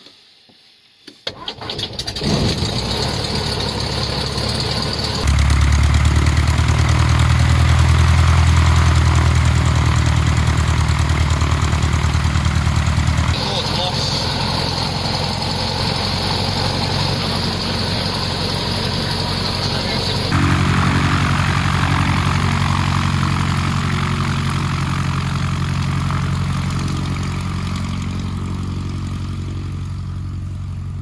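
Light aircraft's propeller engine starting, heard from inside the cockpit: after a brief quiet it catches about two seconds in and settles into a steady run. The engine note steps up about five seconds in, drops back near thirteen seconds, and rises again around twenty seconds.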